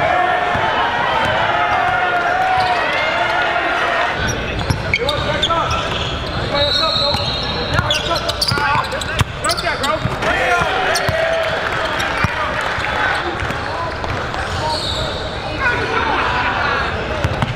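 Game sounds in a basketball gym: crowd voices and shouts, with a basketball dribbled on the hardwood floor. About four seconds in the sound changes and sharp knocks of the ball on the floor come through.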